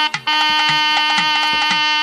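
A nadaswaram plays a couple of short clipped notes, then holds one long loud high note over a steady drone. Thavil drum strokes sound beneath it about twice a second.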